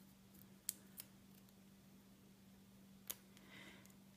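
Near silence under a faint steady hum, with three faint clicks as rubber loom bands are pulled through onto a loom hook, two in the first second and one about three seconds in.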